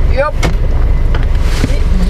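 Mini Countryman's engine running, heard from inside the cabin as a steady low rumble.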